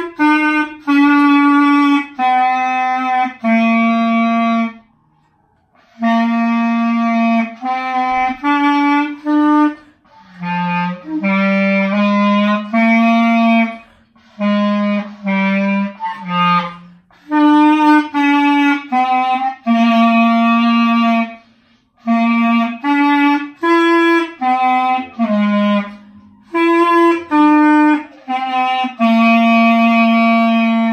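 Solo clarinet playing phrases of separate, tongued notes in its low register, with short pauses between phrases.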